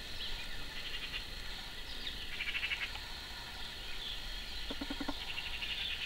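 Outdoor animal sounds: a steady high-pitched chorus, with a short rapid trill about two and a half seconds in and a lower, pulsing call near the end.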